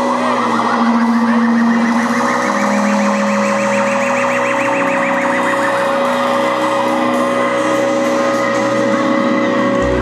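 Live rock band playing a song's instrumental intro: held keyboard and guitar notes, with a warbling, siren-like tone that rises over a few seconds and falls away about six seconds in. A deep bass note comes in just before the end.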